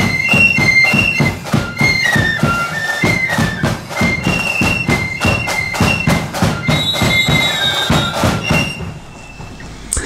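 Marching flute band playing a tune on flutes over a steady drumbeat. The music fades out near the end.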